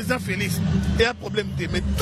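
Voices talking over a steady low engine rumble that sets in at the start.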